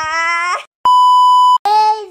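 A drawn-out voice, slightly rising in pitch, breaks off about half a second in. A single steady, high-pitched electronic beep follows, the loudest sound, starting and stopping abruptly after under a second, and a voice starts again with a held note near the end.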